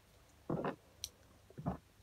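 A few brief soft handling noises and one light click from white plastic bowls being picked up and set out, with quiet room tone in between.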